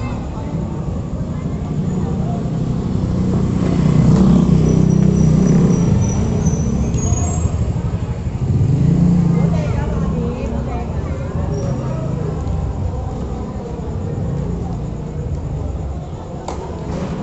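Indistinct voices of onlookers over a heavy low rumble that swells louder a few seconds in and again near the middle.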